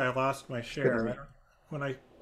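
Speech only: a voice talking in short phrases over a video call, with a brief pause about one and a half seconds in.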